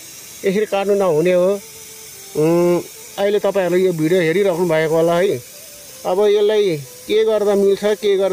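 Steady hiss of water jetting out of a cut black plastic water pipe, with a person's voice in phrases of fairly level, held pitch over it; the voice is the loudest sound.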